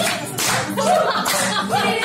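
Live acoustic guitar music with rhythmic clapping about twice a second and voices gliding up and down in pitch over steady low tones.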